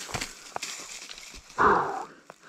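Tyres rolling fast over a loose dirt trail with leaves, with rattles and knocks from the ride. About one and a half seconds in, the rider gives a loud, short grunt or shout.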